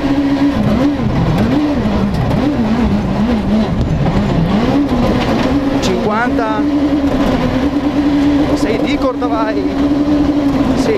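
Rally car engine heard from inside the cockpit while driving a gravel stage. The revs rise and fall several times in quick succession, then hold steady and high from about six seconds in, over constant road noise from the loose surface.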